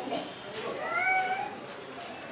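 A child's single high-pitched, drawn-out vocal call that rises and then holds for under a second, starting about half a second in.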